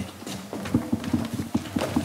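Footsteps on a stage floor at the lectern: a quick run of light knocks that starts under a second in.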